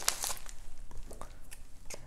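Padded paper mailer envelope crinkling as it is picked up and handled, a scatter of light crackles and rustles.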